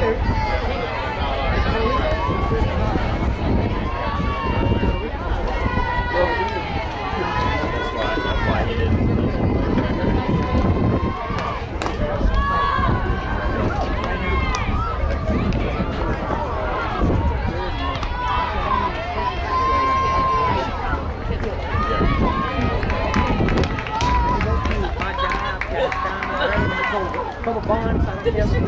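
Many voices at once from softball players and spectators calling and cheering, none clear as words, over a steady low rumble of wind on the microphone.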